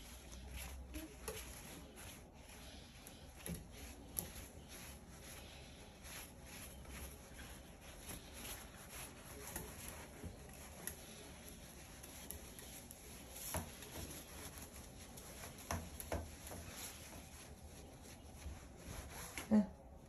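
Faint rustling and scattered small clicks of a paper towel rubbing and dabbing a wet white cockatoo's feathers, with a few slightly louder ticks in the second half.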